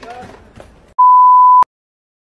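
Faint voices and street sound, then about a second in a loud, steady electronic beep of one pure tone, lasting about two-thirds of a second and cutting off suddenly.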